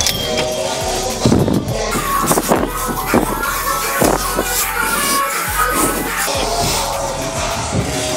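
Background music with a deep, steady bass line.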